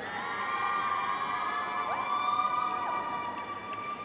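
Routine accompaniment music over the arena speakers, with long held notes and a few sliding pitches.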